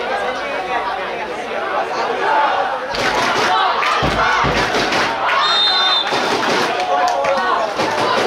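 Several young players and people around the pitch talking and shouting over one another, a dense babble of voices. A short high referee's whistle sounds just past the middle, and there is a brief low rumble on the microphone shortly before it.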